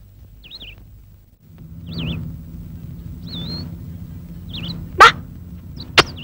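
A bird chirping four times, short wavering high notes, over a low steady hum that sets in about a second and a half in.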